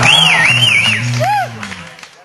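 A live rock band's final chord rings out on a low held note, with a high wavering tone over it in the first second and a brief call from a voice just past the middle. The sound then fades and cuts off right at the end.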